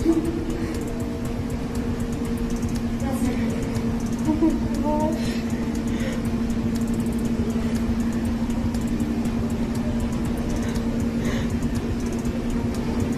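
A steady low hum with a constant droning tone over a low rumble, like machinery or ventilation in an indoor room. A few faint, short vocal sounds come about three to five seconds in.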